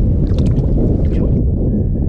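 Loud, steady low rumbling of wind buffeting an action-camera microphone on an open boat, with a few faint clicks in the first second.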